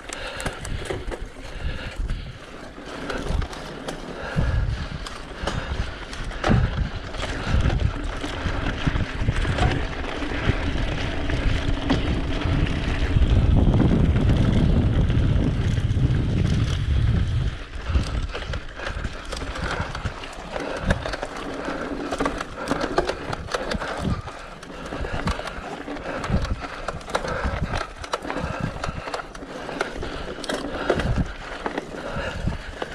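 Mountain bike ridden over a rough, stony dirt trail: tyres rolling and crunching and the bike rattling over rocks, with many short knocks. Wind on the camera microphone rumbles, loudest on a faster stretch about halfway through.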